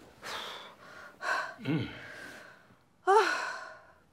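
An older woman breathing hard with gasps and sighs of effort, with a short, loud groan falling in pitch about three seconds in.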